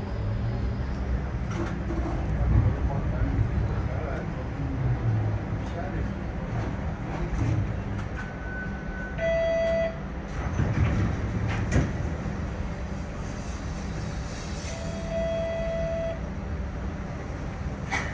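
Steady low rumble inside a TTC streetcar, with muffled voices. A short high tone about eight seconds in drops to a lower, buzzier tone, and a second lower tone follows near fifteen seconds.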